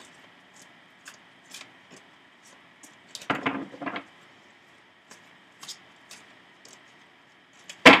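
A deck of tarot cards being shuffled by hand: scattered light card slaps and clicks, with a louder burst about three seconds in.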